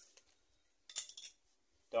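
Hand tools and a wired trailer-hitch socket being handled: a brief cluster of light metallic clicks and rattle about a second in.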